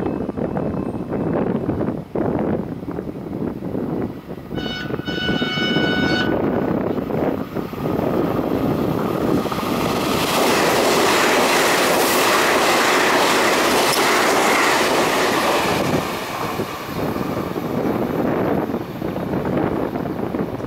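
A TEMU2000 Puyuma tilting electric multiple unit gives one blast of its horn, about a second and a half long, some five seconds in. It then runs through the station without stopping: the noise of its wheels and motors swells, is loudest for about six seconds, and then fades.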